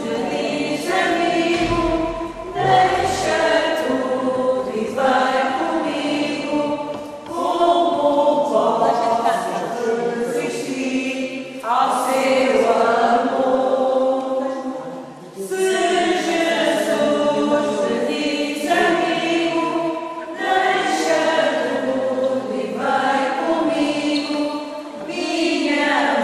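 A group of young voices singing a hymn together, in sung phrases a few seconds long with short breaths between them.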